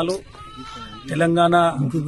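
A man speaking Telugu, with a short pause just after the start. In the pause a faint, thin high-pitched call rises and falls, under a second long; then he goes on with a drawn-out syllable.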